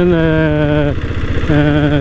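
Royal Enfield diesel Bullet's single-cylinder diesel engine running steadily while riding along. Over it a man's voice holds long, steady notes, broken by a short pause about a second in.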